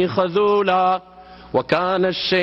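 A man reciting a Quranic verse in Arabic in a melodic, chanted style, with long held notes. He pauses briefly for breath a little after halfway, then resumes.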